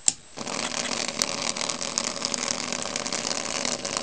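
A click, then a small vibrating motor starts buzzing steadily about half a second in and keeps running. It is wired into a solar garden light's original circuit, which drives it from a battery once the light goes out.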